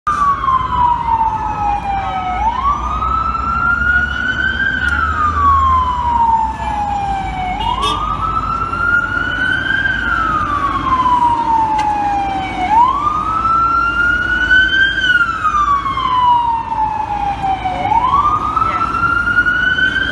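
Electronic siren of an FDNY battalion chief's response vehicle on a slow wail. Each cycle falls in pitch for a couple of seconds, then jumps back up and climbs again, repeating about every five seconds over low street-traffic rumble.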